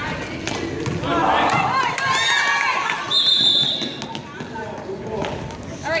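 Youth basketball game in a gym: spectators shout about a second in, then a referee's whistle sounds once, a steady high blast of about a second, just after three seconds in. Ball bounces and knocks are scattered throughout.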